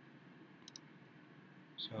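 A faint click of a computer mouse button, a quick press-and-release about two-thirds of a second in, against low room hiss.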